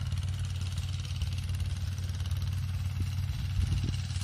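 A small engine running steadily, with a constant low hum and a fast, even pulse.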